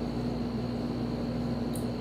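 Steady hum and whir of a ceiling fan running, with a faint constant high tone above it.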